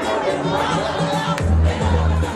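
Loud dance music over a club sound system with a crowd shouting and singing along; the bass is cut at first and slams back in about one and a half seconds in.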